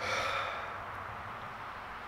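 A man's sigh: one breathy exhale right at the start that fades away within about half a second, leaving a steady background hiss.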